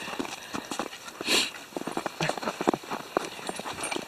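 Irregular crunching steps in snow, several a second, with a short hiss about a second in.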